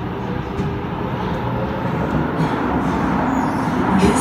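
Kawasaki Heavy Industries C151 metro train running, heard from inside the carriage as a steady rumble of wheels and motors. It grows gradually louder as the train gathers speed out of the station into the tunnel.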